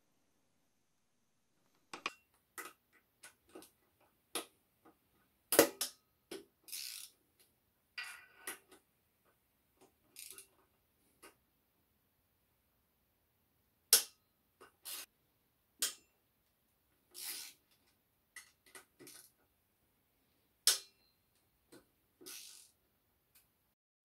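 Scattered metal clinks and knocks from a ratchet and E10 Torx socket on an extension working the connecting-rod cap bolts of a BMW N52 engine as they are loosened, with a few short scraping sounds. The clicks come irregularly, a sharp knock about five seconds in and another near the middle being the loudest.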